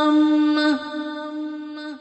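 A male reciter chanting Quranic recitation in melodic tajweed style, holding one long note on a drawn-out vowel. The note breaks off about three quarters of a second in, and a softer trailing tone lingers for about another second.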